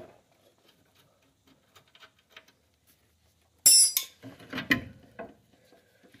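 Metal hand tools and parts clinking at the track bar mount while its nut is taken off: faint clicks, then one sharp ringing metallic clank past the middle, followed by a few lighter clinks.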